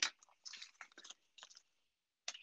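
Faint idling-locomotive sound effects from the small speaker of a SoundTraxx Tsunami sound decoder, just powered up by its battery: a sharp click at the start, then soft, irregular short hisses and ticks.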